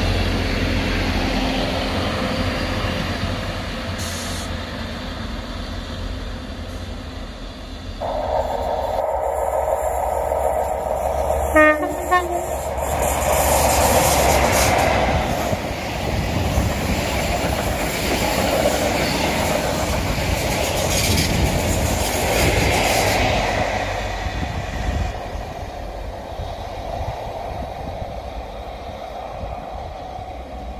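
A GWR Class 800-series Intercity Express train runs out and fades away. Then a CrossCountry HST sounds a short two-note horn as it comes in and rushes past the platform with wheel clatter, the noise building and then fading as it goes.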